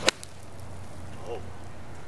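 Golf club striking a golf ball from a bare dirt lie: one sharp crack of impact at the very start.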